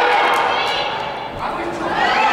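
Spectators' voices calling out and talking during play, with a raised high voice about half a second in, echoing in a large indoor sports hall.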